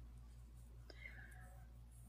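Near silence: a faint steady low hum, with a soft click and a faint breathy sound about a second in.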